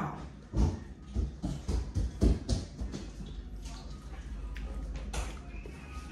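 Close mouth sounds of someone eating fufu with stew: a cluster of soft wet smacks and clicks of chewing in the first half, then quieter.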